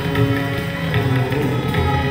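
Hindustani classical music accompanying Kathak dance: held harmonium notes under plucked string melody, with a few scattered tabla strokes.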